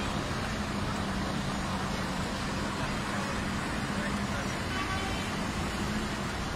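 Vintage Tatra truck engine running steadily as the truck rolls slowly past, a constant low hum, with voices in the background.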